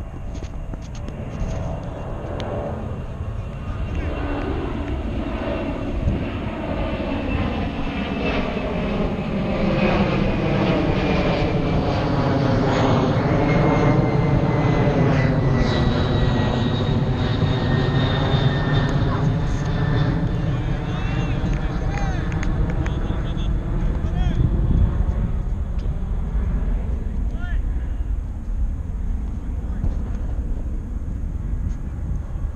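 Airplane passing overhead. Its engine noise swells to its loudest about halfway through, with a thin whine slowly falling in pitch, then fades.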